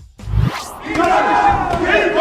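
A short low thump and a quick rising whoosh, then several men shouting and talking over one another in a boxing gym during sparring.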